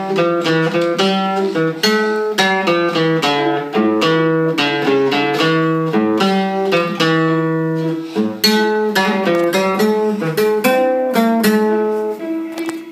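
Classical nylon-string guitar played solo: a fast plucked single-note melody over sustained bass notes, several notes a second.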